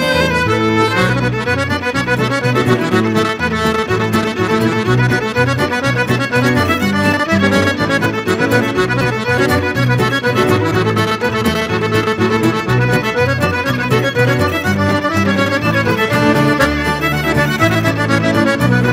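Live folk tune played by fiddle and button accordion together, with guitar accompaniment, running steadily throughout.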